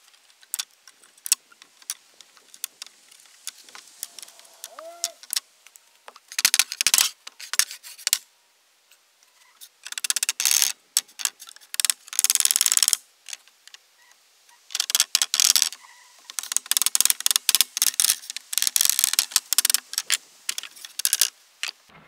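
Rusty nails and brads being worked out of old hardwood flooring boards with a hand tool: sharp metal clicks and clinks, with irregular bursts of scraping and rasping. There is a short quiet gap about nine seconds in.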